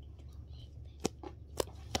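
A homemade pop-it fidget being pressed by hand: three short, sharp pops about a second in, just over half a second later, and near the end.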